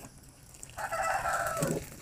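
A rooster crowing once: a single call of about a second that drops in pitch at its end.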